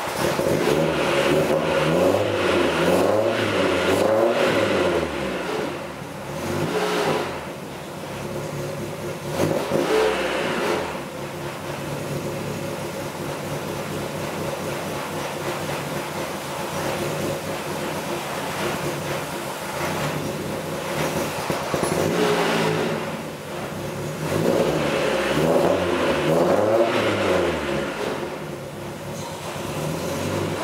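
Chevrolet Corsa 2.0 eight-valve engine idling and being revved in a series of blips, with a long rise and fall near the start and again near the end. The engine turns freely and runs without any abnormal noise, which points the earlier seizure at the worn-out gearbox rather than the engine.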